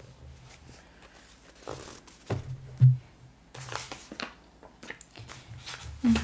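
Paper handling on a spiral-bound planner and its sticker sheets: rustling and scattered light taps, with two dull thumps a little over two seconds in.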